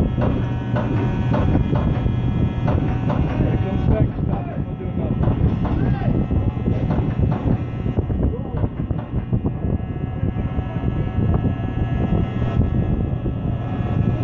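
Factory-floor machine noise: a steady low hum with scattered irregular knocks and clanks, and distant voices underneath.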